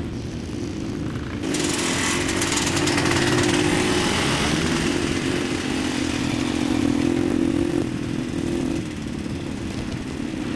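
Motocross sidecar outfit's motorcycle engine running under load on a dirt track, steady in pitch. It gets suddenly louder and harsher about a second and a half in, as the outfit comes close, and drops back near the end.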